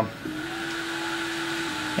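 Home diode laser engraving machine running: a steady machine hiss with one steady hum-like tone that steps slightly lower in pitch near the end.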